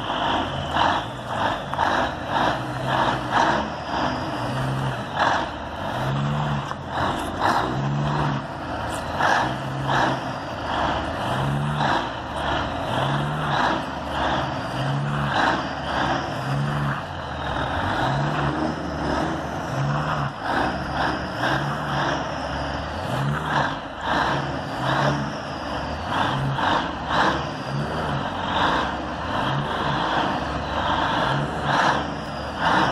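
1977 Peterbilt 359's diesel engine working under load while its rear drive tires spin in soft grass, with a rhythmic pulsing a little more than once a second and scrubbing tire noise.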